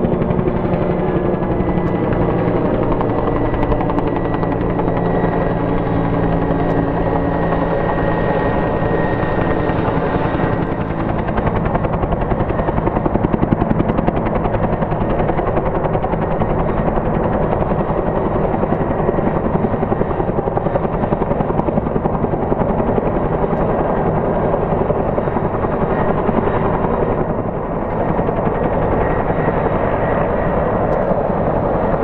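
Bell 212 helicopter in flight, its main rotor beating rapidly and steadily over the turbine engines. A high turbine whine fades about a third of the way in.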